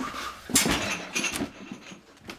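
A sudden loud bang and clatter in a kitchen about half a second in, with a second, shorter clatter just after a second.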